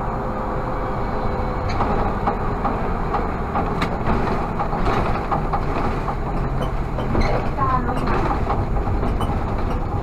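Inside the cab of an Irisbus Citelis CNG city bus under way: the engine and road noise run steadily, with small rattles and clicks from the bus body and a brief squeak about three quarters through as it nears a stop.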